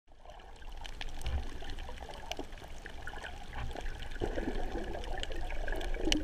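Water gurgling and sloshing around a camera held underwater, with scattered sharp clicks. The gurgling grows louder about two-thirds of the way through.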